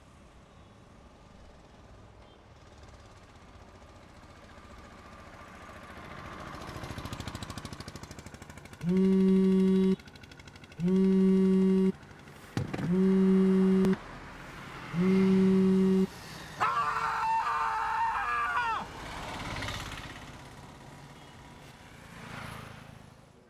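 A mobile phone vibrating in four low buzzes of about a second each, two seconds apart, with a short click between the second and third. A wavering higher tone follows for about two seconds.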